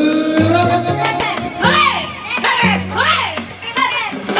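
Party music with a steady bass line playing under a group of excited, high-pitched voices shouting and calling out, loudest from about a second and a half in.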